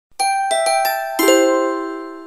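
Short bell-like chime jingle: four quick struck notes, then a lower, louder chord a little over a second in that rings on and slowly fades.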